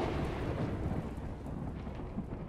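A rumble of thunder, used as a sound effect, dying away slowly.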